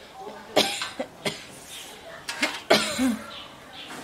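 An older woman coughing, a sick person's cough, in two bouts of several coughs each: one about half a second in and another near three seconds.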